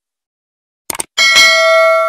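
Two quick mouse clicks, then a bright bell ding that rings on and slowly fades: the sound effect of a YouTube subscribe-button and notification-bell animation.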